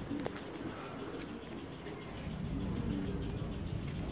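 Faint animal calls in the background, low and wavering, with a few sharp clicks near the start.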